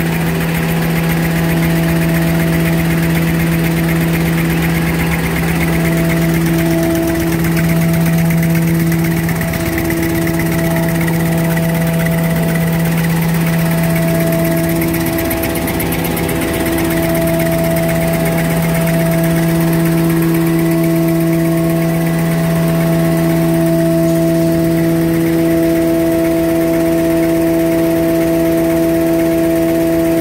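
A 10-lane facial tissue folding machine running: a loud, steady mechanical hum held at one pitch with its overtones.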